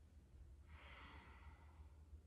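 Near silence: a faint breath out, lasting a little over a second in the second half, over a low steady room hum.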